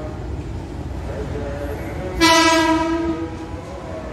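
Horn of a KRL TM 6000 series electric commuter train (ex-Tokyo Metro 6000) sounding once, a single steady note lasting about a second, about halfway through, over the low rumble of the approaching train.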